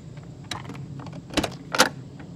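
Three sharp metal clicks and knocks from a motorhome's entry-door latch being worked and the door opening, the loudest near the end.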